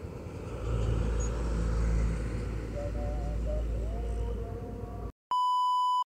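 Road traffic: a low vehicle rumble that swells about half a second in, with faint engine whine. Just after five seconds it cuts off abruptly and a steady, single-pitched test-pattern beep starts.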